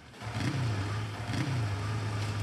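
Motorcycle engine running, revved twice by the throttle, each rev rising and falling in pitch, then holding a steady low note.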